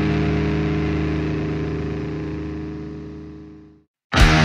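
A held, distorted electric guitar chord ringing out and fading away over a few seconds as the song ends, dying to silence just before the end.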